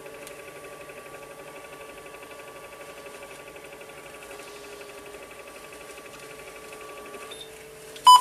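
X-Rite DTP41 spectrophotometer's motor drawing a colour-chart strip through its rollers at constant speed for measurement: a steady mechanical whine with a fast, even flutter. Its higher tone drops out about seven seconds in while a lower hum carries on.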